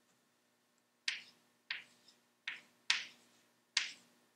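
Chalk writing on a blackboard: five short, sharp strokes, the first about a second in.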